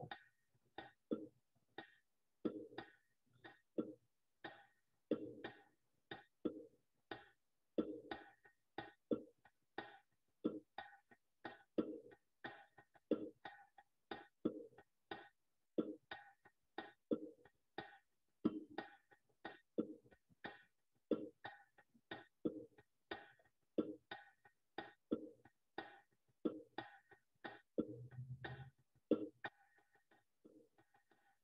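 Middle Eastern drum with bongos playing a masmoudi rhythm progression as a drum circle would: a steady pattern of deep and sharp strokes, about two to three a second, fairly quiet.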